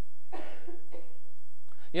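A man's short cough about half a second in.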